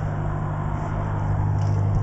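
A heavy diesel engine idling with a steady low hum.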